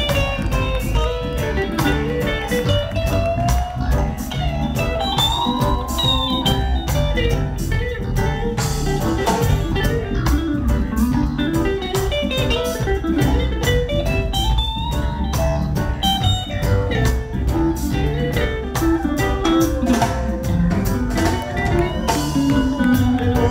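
Live reggae band playing an instrumental passage: an electric guitar plays a winding lead melody over heavy bass and a steady drum beat.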